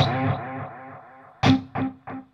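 Electric guitar played through the Devil's Triad pedal with its reverb and delay engaged. A struck chord rings and fades, then about a second and a half in a short picked note sounds and echoes in evenly spaced delay repeats, about three a second, each fainter than the last.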